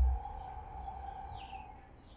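A bird gives two short, high calls that sweep downward in pitch, over a steady hum. A low thump sounds at the very start.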